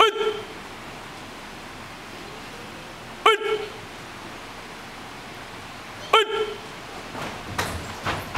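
Three short, sharp shouted "ei!" calls about three seconds apart, each bending up and then down in pitch, marking the moves of a karate drill.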